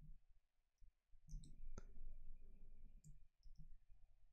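Faint computer keyboard typing: scattered soft key clicks, with one sharper click a little under two seconds in.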